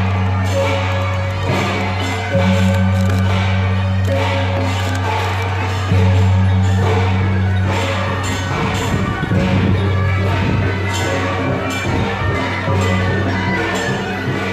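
Taiwanese temple procession music, loud and continuous: rapid cymbal and gong beats over a sustained low tone. The low tone starts afresh with a jump in loudness about two, six and thirteen seconds in.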